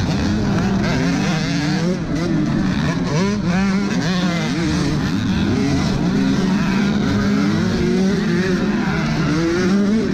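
Dirt bike engines revving hard in a pack of off-road racers. The camera bike's own engine is loudest, its pitch climbing and dropping again and again through the gears, with other bikes' engines running alongside.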